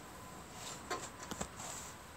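A few light clicks and taps from multimeter test leads being handled and touched to the stator wiring, clustered about a second in.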